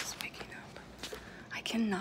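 A woman whispering to the camera, then speaking aloud in a low voice near the end, with a few small clicks.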